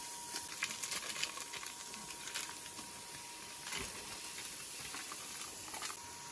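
Thin-sliced beef starting to fry in a nonstick pan on a wood stove, a light sizzling hiss with scattered small crackles, with crinkling of plastic wrap as the frozen slices are peeled from their packets near the start.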